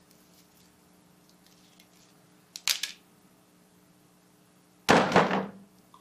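Low room tone with a faint hum, a brief crinkle of thin plastic wrap about two and a half seconds in, then a sudden loud thump near the end.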